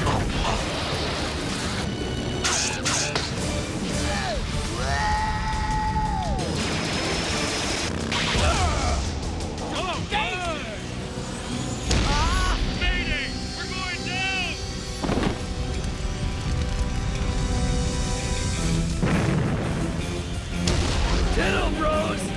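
Cartoon action music with booms and crashing sound effects, including a few sudden impacts.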